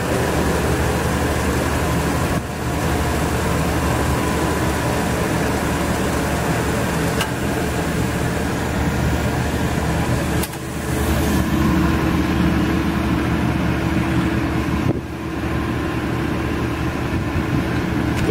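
Cincinnati mechanical plate shear running with its electric drive motor and flywheel turning: a loud, steady machine hum. About ten seconds in, a higher steady motor tone joins for around four seconds, then drops away.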